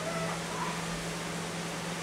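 A pause in speech: room tone of a steady low hum and hiss, with a faint, brief pitched sound near the start.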